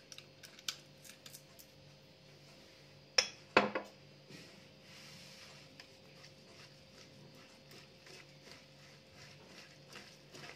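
Kitchen items knocking on a hard countertop and glass bowl: a few light clicks, then two sharp knocks about half a second apart some three seconds in. After that, faint rustling as a gloved hand works the filling in the glass bowl.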